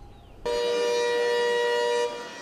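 Siren or warning horn sounding one steady, unwavering tone, several pitches at once. It starts abruptly about half a second in and holds loud and level.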